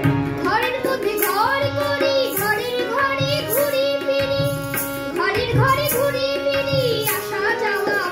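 A boy singing a Bengali song in long, gliding phrases, accompanied by tabla and a steady held drone tone.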